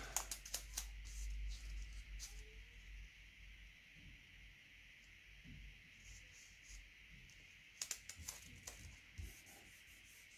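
Faint paper handling: a washi sticker strip being peeled and rubbed down onto a planner page by fingertips. There are light rubbing sounds and a few small clicks in the first couple of seconds and again near the end.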